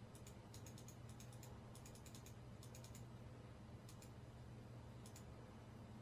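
Faint clicks of a computer keyboard being typed on, in short irregular clusters, over a steady low hum.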